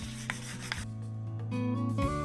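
Rubbing on the shellac-finished wooden top of a bass guitar body, a dry scuffing hiss that stops about a second in, over background guitar music with a held low note.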